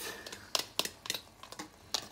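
A metal fork tapping and scraping against a plastic bowl, several sharp, irregular clicks, as beaten egg yolks are scraped out into a pot.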